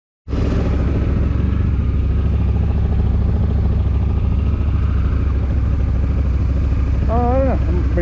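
Motorcycle engine idling steadily with a low, even rumble, with a man's voice cutting in briefly near the end.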